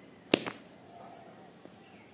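A single sharp crack from a kung fu practitioner's sudden movement in a Hung Gar form, with a fainter second crack right after it.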